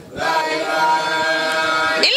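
Men's voices chanting a devotional chant, holding long, steady notes. There is a brief pause for breath right at the start before the voices come back in.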